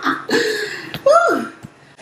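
A woman laughing and making wordless vocal sounds, ending in a drawn-out sound that rises and then falls in pitch, with a sharp click about a second in.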